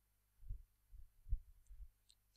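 A stylus writing on a tablet, heard as a few faint, low thumps spread over two seconds.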